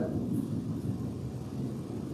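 A pause in speech: faint, steady low room noise in a church hall.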